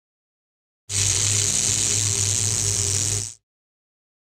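A burst of static-like hiss over a low buzzing hum, about two and a half seconds long, starting and stopping abruptly.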